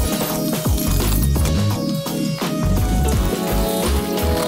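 Electronic background music with a heavy bass line and a steady drum beat.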